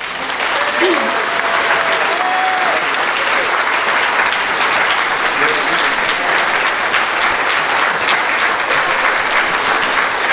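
Audience applauding, a dense steady clapping that breaks out at once as the singing stops, with a few voices heard over it in the first few seconds.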